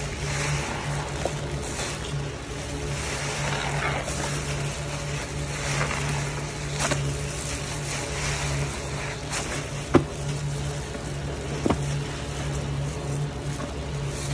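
A soap-soaked sponge squeezed and kneaded by a gloved hand in thick foamy Pine-Sol suds, wet squelching swelling every two to three seconds, with two sharp clicks near the end.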